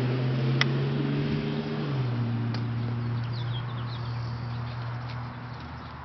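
A steady low engine hum that drops in pitch about two seconds in and slowly fades, with a single sharp click just over half a second in and a few faint bird chirps.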